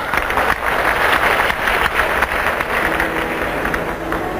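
Arena audience applauding, a dense patter of many hands clapping. Steady musical tones come in near the end.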